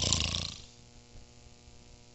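A man imitating a snore into a handheld microphone: a short, noisy, breathy snore that fades within about half a second. It stands for the 'coma-type snore' that he says is usually a sign of a coma or a stroke. Quiet room tone with a faint hum follows.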